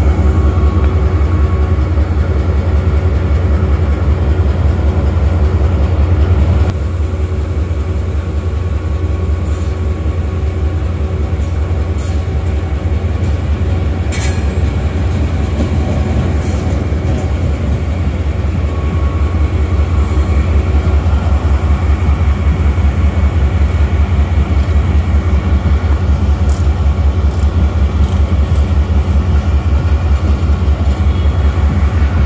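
A passenger express train running past on the adjacent track: coaches rolling by with a steady rumble and wheels clicking sharply over the rail joints. Under it, a diesel engine idles with a steady low throb.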